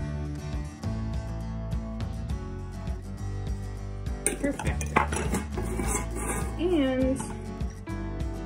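Background music, with a metal measuring cup clinking against a stainless steel mixing bowl from about four seconds in as sugar is tipped into it.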